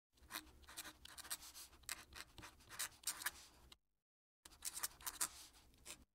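Fountain pen nib scratching across paper in a quick run of cursive strokes, faint. The strokes break off for about half a second past the middle, then resume.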